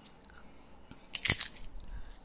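A crisp, oil-free vadiyalu wafer (a papad-like fryum) being crushed in the fingers, with one sharp, loud crunch a little after a second in and a softer crackle after it. The crunch shows the wafer is fully crisp.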